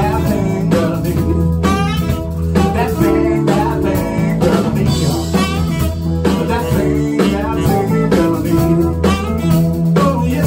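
Live band playing: a male lead vocal over electric archtop guitar, keyboard, bass and drums.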